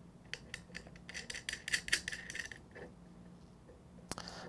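Small metal nut being spun by hand onto a threaded stud through a battery lug, a quick run of light metallic clicks and scrapes that stops about three seconds in.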